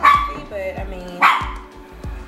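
A dog barking twice, sharp single barks, one at the start and another just past a second in.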